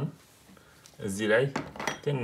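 Quiet at first, then a person's voice briefly about a second in, with a light click near the end.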